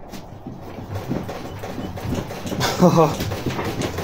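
Low rustling and handling noise, then a short voice-like sound near three seconds in.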